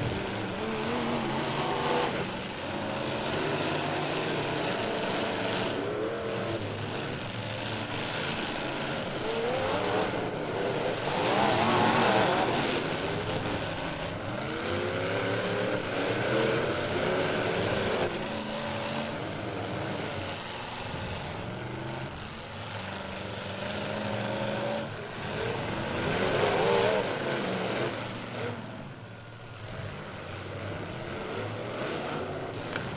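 Demolition derby car engines revving on a dirt track, several at once, their pitch climbing and falling again and again as the cars accelerate and back off, loudest about eleven seconds in and again near the end.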